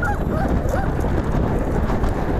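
Wind buffeting the microphone, a steady low rumble throughout, with a few short high cries over it.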